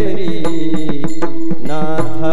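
Varkari bhajan: a group of men chanting together over a steady harmonium drone, with regular strokes of a pakhawaj barrel drum and clashes of small taal hand cymbals.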